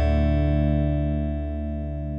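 A strummed guitar chord with bass beneath it, left ringing and slowly fading.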